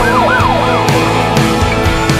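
Ambulance siren in a fast yelp, rising and falling about four times a second and fading out about a second in, over the song's band music.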